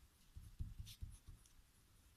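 Faint scratching of a pen writing on paper: a few short strokes in the first second and a half.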